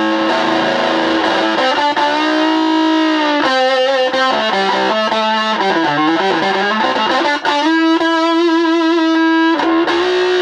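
Electric guitar played through an early-1950s Gibson BR-9 twin-6V6 valve amplifier turned up full and pushed by a Rangemaster booster, giving an overdriven lead tone. It plays held notes with string bends in the middle and wide vibrato on the sustained notes near the end.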